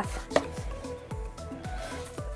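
Plastic compartment storage boxes, still in plastic wrap, handled and turned over: light plastic knocks and rubbing, with one sharp click about a third of a second in.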